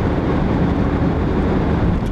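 Steady road and engine noise of a car being driven, heard from inside the cabin: an even low rumble with no change in pitch.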